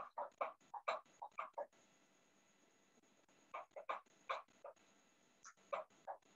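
Faint animal calls in three quick runs of short, clipped notes.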